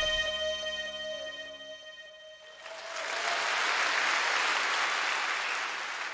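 The last held chord of a live band, with a sustained electric guitar note on top, rings out and fades away. About two and a half seconds in, audience applause swells up and holds.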